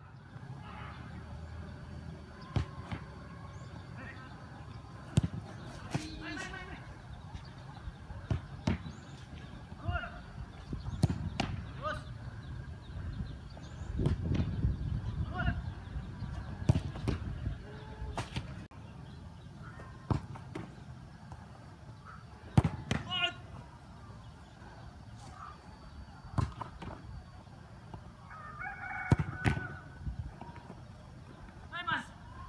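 A football being kicked hard on a grass pitch, shots struck at a goalkeeper, heard as a series of short sharp thuds a few seconds apart. Faint distant calls come between the kicks over a low background rumble.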